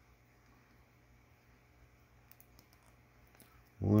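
A few faint, light clicks of a small plastic toy pistol being wiggled into a plastic action-figure hand, coming in the second half.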